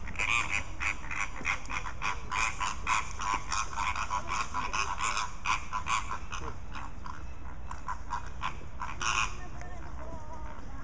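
Flock of flamingos honking: a rapid run of short calls, several a second, that thins out after about six seconds, with one louder call near the end.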